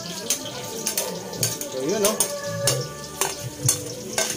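Chopped onion and garlic sizzling in oil in a metal wok, with a metal spatula scraping and clicking irregularly against the pan as they are stirred.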